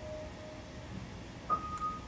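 Faint, sustained musical notes from a keyboard-like instrument: a held note fades away in the first second, and a higher note starts softly about one and a half seconds in.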